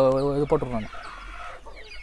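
Native country chickens clucking faintly after a man's voice trails off in the first second.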